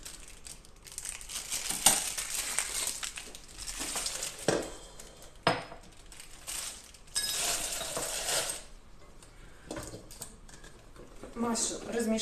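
Utensils scraping and knocking against a stainless-steel stand-mixer bowl as thick marshmallow mass is worked and scooped out. The sound comes as stretches of scraping broken by several sharp metal knocks.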